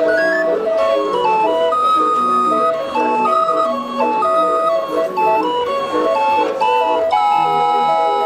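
Hand-cranked barrel organ playing a tune, a stepping melody of clear sustained notes over chords, finishing on a long held chord in the last second.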